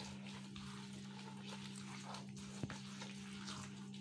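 Palm of a hand working a soft margarine, sugar and oil mixture in a glazed bowl: faint, irregular squishing and rubbing strokes as the oil is worked into the butter and sugar, over a steady low hum.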